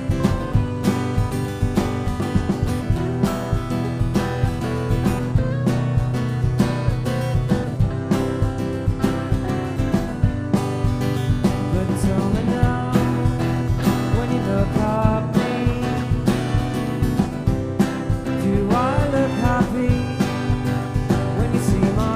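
A live band playing an instrumental passage with a steady drum beat, electric guitar, bass, acoustic guitar and trumpet.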